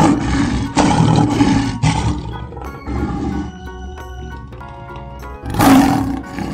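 Lion roaring: three roars in quick succession, then one more near the end, over background music.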